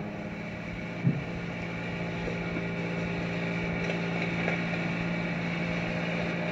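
A single low instrument note struck about a second in and held steadily as a drone, heard through the hiss of a lo-fi cassette recording of a home band.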